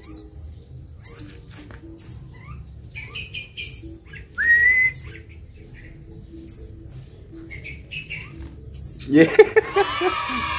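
A young sunbird gives short, high, sharp chirps about once a second. A single loud rising whistle comes about four and a half seconds in, and a man laughs near the end.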